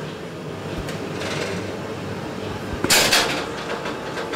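Wire whisk stirring a liquid fruit mix in a plastic jug over a steady background hum, with one brief, louder clatter about three seconds in.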